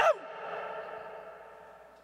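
A man's voice through a public-address system ends a word, then its echo-effect tail rings on and fades away over about two seconds.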